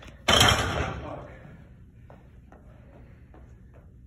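A plate-loaded barbell set down hard on a lifting platform: one loud crash about a quarter-second in that fades away over about a second. A few faint footsteps on the rubber gym floor follow.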